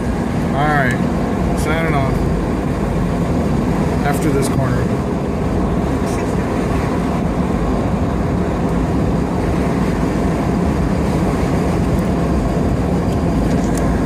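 Steady road and engine noise inside the cab of a moving FZJ80 80-series Toyota Land Cruiser, its 4.5-litre inline-six running at a constant cruise. A brief voice is heard twice in the first two seconds.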